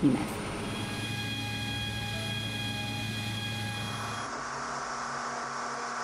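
Steady machinery hum with a high whine made of several held tones, from flight-line equipment around a large military transport. About four seconds in it gives way to a broader, steady rushing noise.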